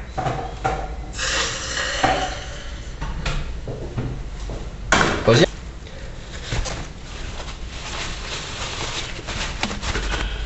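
Kitchen handling sounds: utensils and dishes clattering and scraping, with two sharp knocks about five seconds in.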